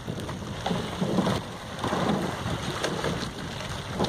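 Splashing and rushing water from the oars and hull of a coxed rowing eight passing close by, with wind rumbling on the microphone.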